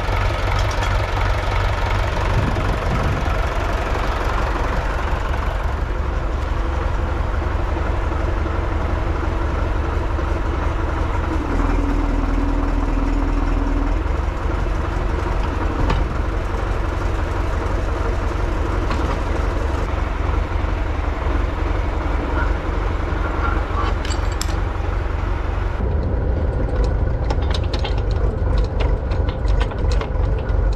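A 1975 YuMZ-6L tractor's diesel engine running steadily, with a low drone throughout. A steady hum rises over it for a couple of seconds midway, and near the end rattles and clanks come in over the engine.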